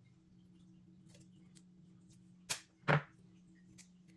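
Black electrical tape pulled off its roll in one short sharp rip, about two and a half seconds in, among light handling clicks.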